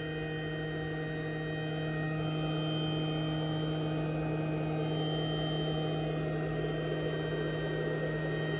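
Steady machine hum from an xTool laser engraver's fans running with the engraving job finished, a low steady tone over an airy rush that grows slightly louder after about two seconds.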